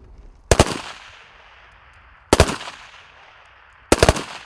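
Rifles fired into the air as a funeral honour salute: three ragged volleys about a second and a half apart, each a quick cluster of shots followed by a fading echo, the last near the end.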